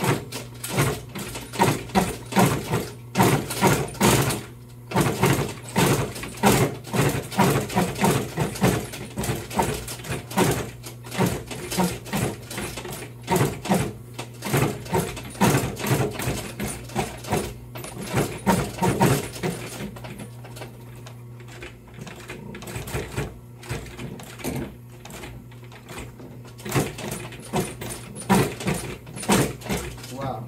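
Industrial sewing machine stitching slowly through vinyl, headliner foam and a wooden door panel, the needle knocking about twice a second over a steady motor hum. The stitching eases off for a few seconds past the middle, then picks up again.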